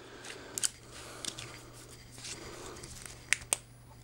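Small LED flashlight being handled: faint rustling and light clicks as the battery goes in and the body is closed, then two sharp clicks close together near the end from its rear switch as the light is switched on.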